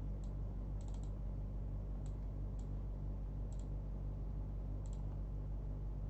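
Scattered sharp clicks at a computer, some in quick pairs or a quick run of three, over a steady low electrical hum.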